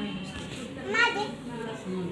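Children's and adults' voices chattering together, with one voice calling out loudly and high about a second in.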